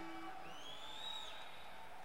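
A lull between songs on a live concert soundboard tape: faint hiss and stage noise as the last guitar notes fade. About half a second in, one whistle rises and then falls away.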